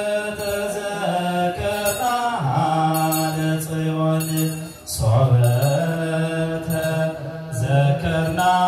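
Male voices chanting Ethiopian Orthodox liturgical chant in unison, in long held notes that slide between pitches, with short breaks for breath between phrases.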